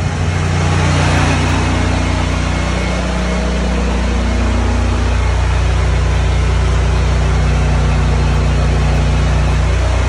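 Small gasoline engine on pressure-washing equipment running steadily at constant speed, a loud even drone with a slight shift in tone about four seconds in.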